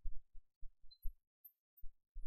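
Faint, short low thumps, about five in the first second and another near the end, with no speech.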